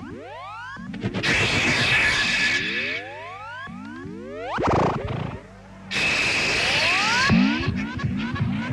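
Live industrial electronic music: synthesizer tones sweeping upward in pitch again and again, over a steady low hum. Two blocks of hissing noise cut in and out abruptly, and near the end the sweeps quicken into rapid short rising chirps.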